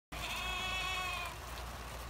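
A single long bleat from livestock in the pasture, one steady call lasting about a second before it trails off.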